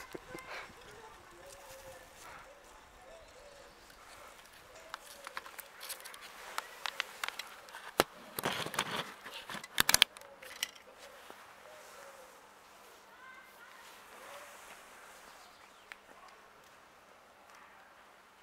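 Camera handling noise: a rustle and a few sharp knocks about eight to ten seconds in, as the camera is set down on a concrete pavement, over a quiet outdoor background.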